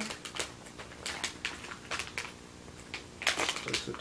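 Crinkling and crackling of a plastic-foil blind-bag toy packet as it is worked open by hand, in irregular sharp crackles with a louder burst about three seconds in.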